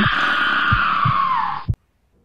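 A person's hoarse, breathy vocal sound, a drawn-out rasp that slides down in pitch and cuts off abruptly about 1.7 seconds in, followed by near silence.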